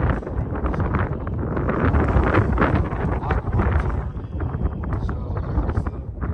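Wind buffeting the microphone in a steady low rumble, with a man's voice talking indistinctly beneath it. The talk thins out after about four seconds.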